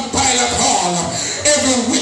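A man singing into a handheld microphone over accompanying music with a steady beat and a shaker.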